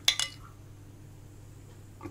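A metal spoon clinking against a ceramic plate of sauce, two quick clinks right at the start, followed by a faint steady low hum.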